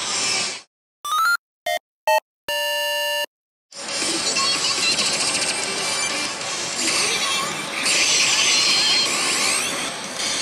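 The sound cuts out about half a second in and a short electronic jingle plays into silence: a few brief beeps, then a held chord. From about four seconds in, the loud din of a pachislot hall returns: many slot machines' electronic music and effects layered together, with sliding tones.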